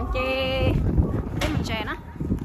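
A held, even-pitched tone lasting about half a second, then a few words from a person's voice, over a low rumble from the camera moving.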